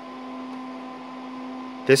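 A running DEC PDP-8/e minicomputer, its cooling fans and power supply giving a steady hum: one low tone with fainter higher tones over an even hiss.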